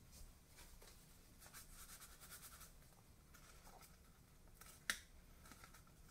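Near silence with faint rustling of cardstock being handled as glued tabs are pressed into place, and one short sharp tap near the end.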